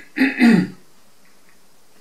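A man clearing his throat in a short, loud burst within the first second, followed by quiet room tone.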